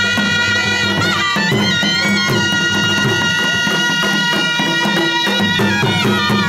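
Kashmiri folk band: several surnai (double-reed pipes) playing long held notes in unison, with a quick ornament about a second in, over a steady dhol drum beat.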